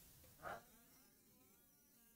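Near silence: room tone, with one brief faint sound about half a second in.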